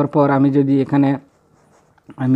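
A man speaking for about a second, then a brief pause.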